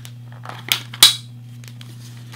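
Two short, sharp clicks of a plastic external hard-drive enclosure being handled, the louder one about a second in, over a steady low hum.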